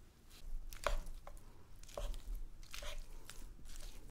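A handful of soft taps and clicks from a wooden spoon working in a bowl of rice and fried eggs, cutting the soft eggs into pieces.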